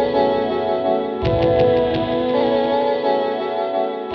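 Guitar sound-on-sound loop playing back through a Strymon Volante tape-style looper, with held notes that repeat about every three seconds. About a second in, the loop's start comes round again with a low thump and a run of quick clicks: cable stomp recorded into the loop, which the pedal's Low Cut is set to remove.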